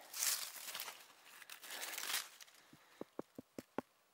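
Gloved hand sweeping and scraping dry leaves and soil, a rustling, crinkling noise for about two seconds, then a quick run of about six short clicks near the end.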